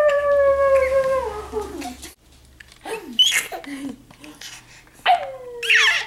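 A long, howl-like call held for about two seconds and slowly falling in pitch, then shorter calls and a rising-and-falling call near the end.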